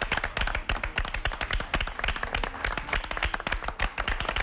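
A group of people clapping, many quick claps overlapping steadily.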